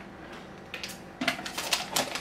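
Stacked potato crisps rattling and scraping inside a cardboard Pringles tube as a hand reaches in for chips: a few clicks a little under a second in, then a quick run of crackly rattling near the end.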